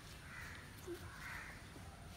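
Two faint, distant bird calls over quiet background noise, one shortly after the start and one a little past the middle.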